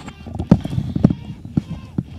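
Handling noise from a headset and its cable being taken off and moved about at a studio desk: a few sharp knocks and clicks, roughly half a second apart, with faint rustle between.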